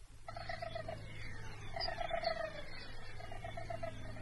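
Quiet beatless passage of a cosmic-music DJ mix tape: short runs of fast chirring pulses, several seconds apart, over a steady low hum.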